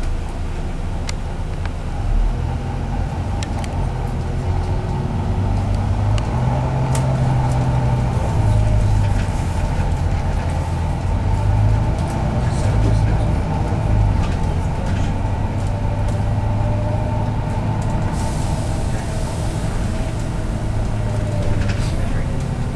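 Double-decker bus running on the road, heard from inside the passenger cabin: a steady low engine and road drone that shifts as the bus accelerates and slows, with a faint whine rising slightly near the end.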